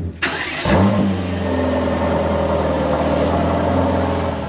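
Mercedes-AMG GT Black Series' twin-turbo V8 starting: it catches suddenly, flares briefly in revs about a second in, then settles into a steady idle.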